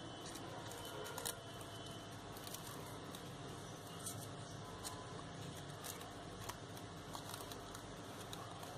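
Faint rustling and crinkling of crepe paper being wrapped by hand around a wire flower stem, with a few light ticks over a low steady hiss.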